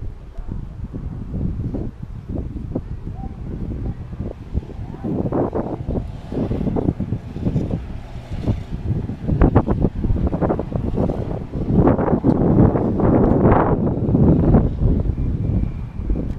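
Wind buffeting the camera microphone in gusts, a heavy uneven rumble that gets louder about five seconds in and again near the end.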